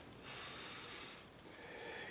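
A person breathing audibly: one long breath, then a fainter one near the end.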